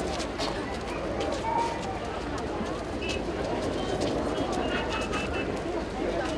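Outdoor ambience of indistinct distant voices, with small birds chirping: a series of short high chirps in the second half.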